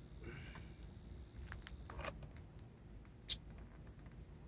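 Faint clicks and scrapes of hands handling a foam RC model plane, with one sharper click about three seconds in.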